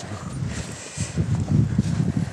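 Irregular low rumbling and soft thuds on a handheld camera's microphone as it is carried across the sand: wind and handling noise.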